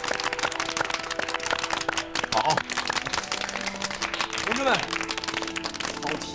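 A group clapping, with short calls from voices and background music.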